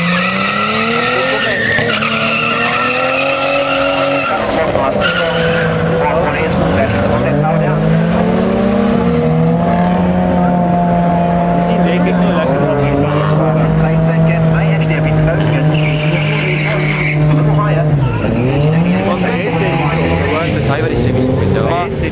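Drag-racing cars launching off the line at the green light, engines revving and climbing in pitch, dropping back at each gear change. This gives way to a long steady engine note, and then more revving near the end.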